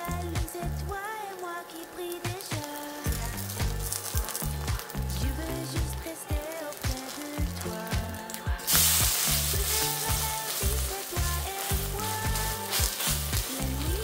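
Batter pancake frying in a stainless steel pan, sizzling steadily. About nine seconds in, the sizzle grows much louder as the pancake is turned over onto the hot pan.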